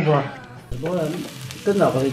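Sausages and meat sizzling on a tabletop stone grill, a fine hiss that comes in about half a second in. A voice repeats a short syllable over it.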